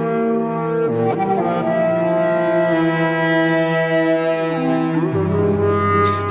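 A Eurorack modular synthesizer's generative Krell patch playing: sustained pitched notes from the melody voice and the counterpart voice, the latter a pulse oscillator exciting an Elements resonator. The notes change about a second in and again near five seconds, with short pitch glides at the changes.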